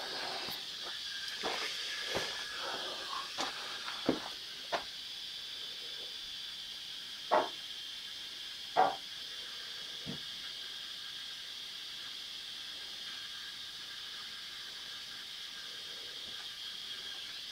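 Steady high hiss with a few soft knocks and rustles as a dial thermometer is handled, and two louder brief rustles about seven and nine seconds in.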